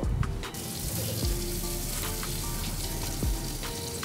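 Hot links and franks sizzling on a grill's grates, a steady hiss that starts about half a second in, under background music.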